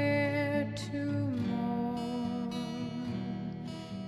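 Music: acoustic guitar accompanying a sung melody of long held notes that slide down to a lower pitch about a second and a half in.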